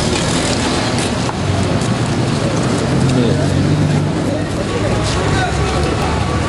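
Street ambience: many people talking over one another amid road traffic, with a vehicle engine running and swelling in the middle.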